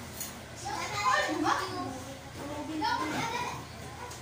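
Young children's voices: several short high-pitched calls and chatter, in bursts.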